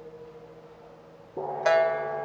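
Pipa, a Chinese plucked lute, playing slowly: a low note rings and fades. About one and a half seconds in, new plucked notes are struck, with a sharper, louder pluck just after.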